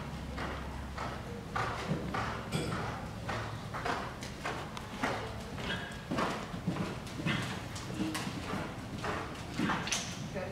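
Hoofbeats of a horse cantering on soft dirt arena footing: a steady rhythm of dull thuds, roughly one or two a second.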